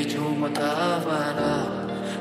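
Lo-fi chillout Hindi love song: a singer holds a drawn-out, wavering sung note over sustained keyboard chords. The low end shifts a little past halfway as the bass moves.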